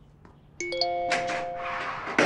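A smartphone's message alert chime: a few bright notes rising in quick succession about half a second in, then ringing on.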